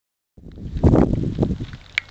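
Wind buffeting the camera microphone: an uneven low rumble that swells about a second in, with a sharp click just before the end.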